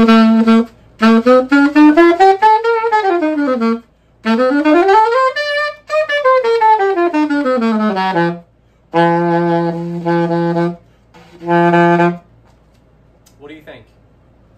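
Alto saxophone played on a new Rico Royal (blue box) reed: a short held note, then two runs that climb and fall back, then two long low held notes. The player judges the tone on this reed not great.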